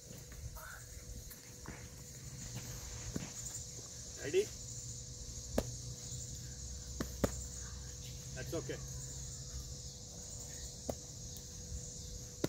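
Steady high-pitched chorus of insects, with a few sharp knocks scattered through it.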